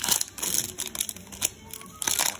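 Foil Pokémon booster-pack wrappers crinkling and rustling as they are handled, in irregular crackly bursts.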